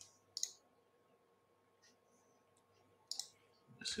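Computer mouse clicking: a sharp click about half a second in and another about three seconds in, with quiet between.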